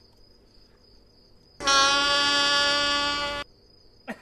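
A faint steady high chirping runs throughout. About a second and a half in, a loud steady horn-like tone with many overtones starts abruptly, holds for about two seconds and cuts off.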